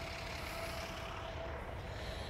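Steady low drone of distant vehicle traffic, with a faint thin steady tone that fades out about one and a half seconds in.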